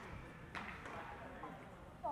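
Faint background of a baseball training hall: a single soft knock about half a second in, with faint distant voices.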